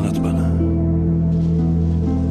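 Background score of sustained, layered held tones in an ambient style, with a brief hiss-like sound in the first half second.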